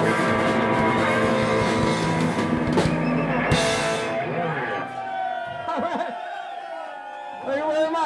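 A live rock band with electric guitars and drums plays loudly and ends on a final hit about four seconds in. The crowd then cheers and whoops, with a louder burst of shouting near the end.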